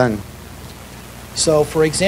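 A man's voice speaking into a microphone, with a pause of about a second of steady hiss before he speaks again.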